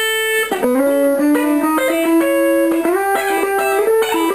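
Fender Telecaster electric guitar in a clean tone playing a country lick in third intervals in the key of A, using pull-offs: pairs of notes ring together and step from one pair to the next. One note glides up in pitch about three seconds in.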